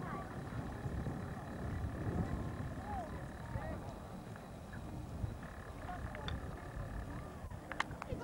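Wind rumbling on the camcorder microphone, with faint, indistinct voices now and then and a couple of sharp clicks near the end.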